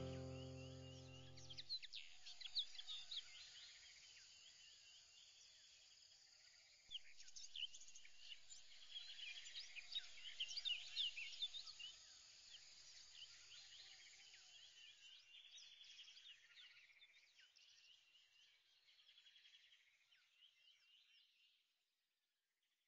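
Many small birds chirping faintly, a dense chorus of short quick calls that swells about seven seconds in and fades out near the end.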